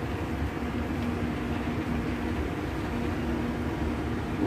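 Moving walkway running: a steady low rumble with a faint hum.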